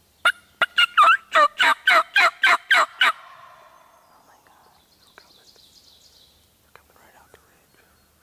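Turkey calling: a loud series of about eleven evenly spaced notes, roughly four a second, lasting about three seconds.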